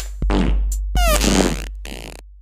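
A hip-hop beat with deep sustained 808 bass, with short fart sounds chopped in rhythmically where the vocals would be. A longer fart with falling pitch comes about a second in.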